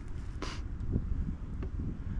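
Wind buffeting the microphone, a low rumble, with a brief hiss about half a second in.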